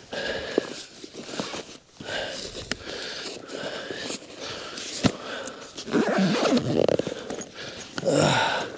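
A man breathing hard and panting from running, in repeated heavy breaths that grow louder near the end, with a few sharp knocks or footfalls.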